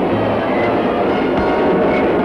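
Cartoon sound effect of a train speeding past: a steady, noisy rush over a low rumble.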